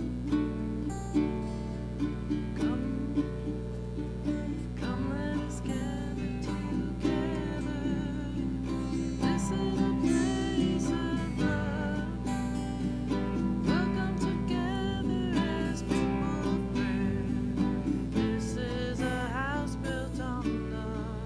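Two acoustic guitars playing a song together. A voice sings over them from about five seconds in, its held notes wavering.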